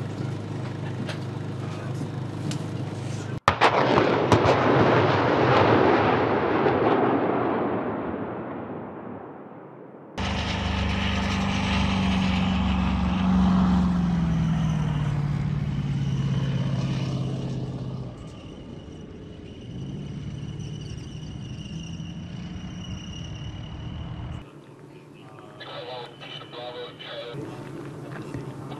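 A rocket launching from a multiple-launch rocket system: a sudden loud start, then a roar that fades over about six seconds. After a cut, a tracked self-propelled howitzer's engine runs as it drives, its note falling.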